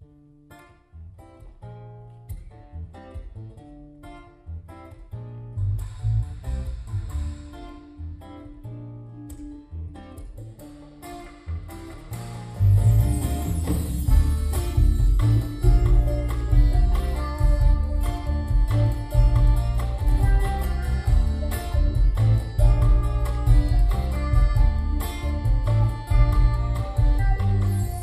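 Instrumental opening of a folk-style song played live, with acoustic guitar picking and accordion. The first dozen seconds are quiet and sparse; then, about twelve seconds in, the full band comes in louder over a deep bass.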